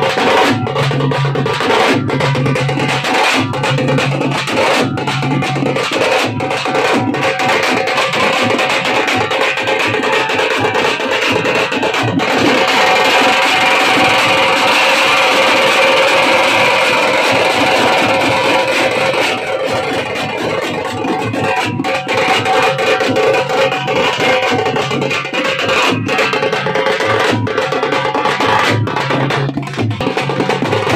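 Live folk drumming on large double-headed drums beaten with sticks, a fast, continuous rhythm with a louder, denser passage from about twelve to nineteen seconds in. It is the beat that accompanies a Veeragase dance.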